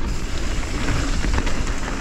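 Mountain bike rolling fast down a dirt trail strewn with pine needles: a steady rush of tyre noise and low wind rumble on the mic, with scattered light clicks and knocks from the bike over the bumps.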